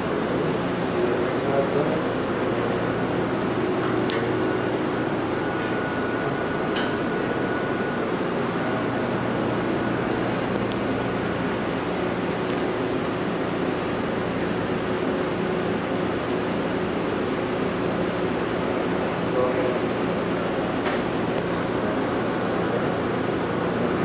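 Steady rushing machine noise at an even level, with a thin, high-pitched steady whine over it.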